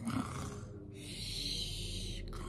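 A woman imitating snoring: a breathy snore-like inhale, then a long hissing exhale that starts about a second in.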